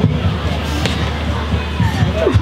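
Live band playing through a PA at the close of a song, a steady low amplified hum with a few low thumps.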